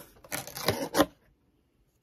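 Cardboard shipping box being handled and opened: a few sharp cardboard scrapes and knocks, the loudest about a second in, after which the sound cuts off abruptly.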